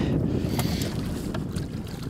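Low wind rumble on the microphone, with a few faint short splashes as a small channel catfish is drawn up to the boat side on the line.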